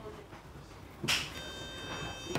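Electronic beep from a Hilti cordless tool's torque-control module as it scans a box of anchors: one steady tone about a second long, signalling that the anchor type has been recognised. A short rustle comes just before it.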